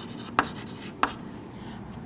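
Chalk writing on a chalkboard: two short taps as the chalk strikes the board, with faint scratching of chalk strokes between them.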